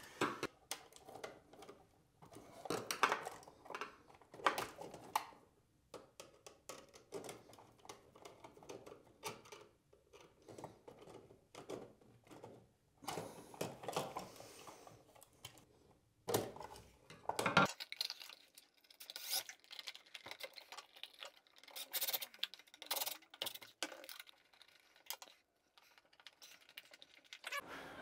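Intermittent small clicks, taps and rustles of hands handling and fitting a USB wall receptacle and its wires, with scattered sharper knocks of plastic and metal.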